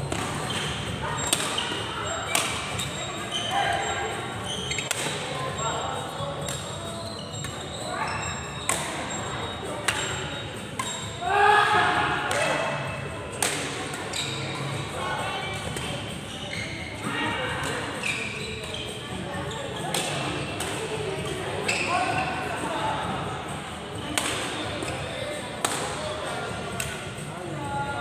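Badminton rackets striking a shuttlecock in a reverberant sports hall: sharp hits at irregular intervals over the chatter of players and onlookers, with a loud shout about eleven seconds in.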